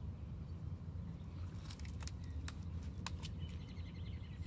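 Quiet outdoor background: a steady low rumble with a few light clicks around the middle as a hardcover picture book is closed and turned over, and faint bird chirps near the end.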